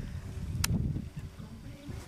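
Wind buffeting the microphone with a low, uneven rumble, and one sharp click about two-thirds of a second in as a spinning reel on a carp rod is handled.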